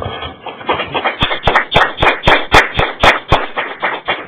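Small audience clapping, the nearest clapper's strokes evenly spaced at about four a second, after a brief laugh at the start.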